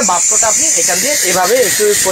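Electric pressure cooker venting steam through its release valve once the rice has cooked: a steady high hiss that starts suddenly and keeps going.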